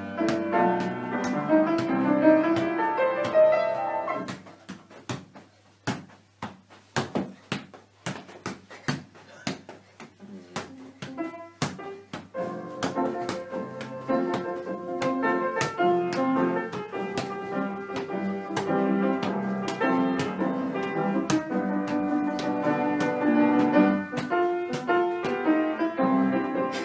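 Upright piano played in a room, with the thuds of a ball being kicked and juggled on and off. The playing thins to a few scattered notes about four seconds in and picks up again fully around twelve seconds in.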